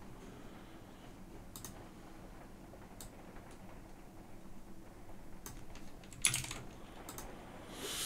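A handful of sharp, scattered clicks from a computer keyboard and mouse over quiet room hum, the strongest about six seconds in.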